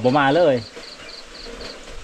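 An insect chirping in a high, even pulse, about four chirps a second, faint behind a man's voice in the first half-second.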